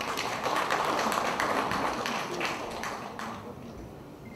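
Audience applauding, a dense patter of many hands clapping that swells in the first second and dies away near the end.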